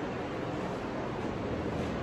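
Large floor drum fan running, a steady even rush of moving air.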